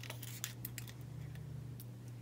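Faint, scattered small clicks and ticks of planner sticker sheets and paper being handled.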